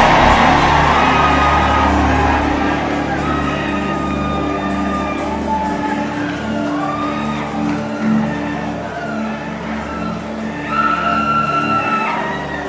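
Background church music of steady held chords under a large congregation praying aloud and calling out in a big hall, gradually getting quieter after the loud prayer before it.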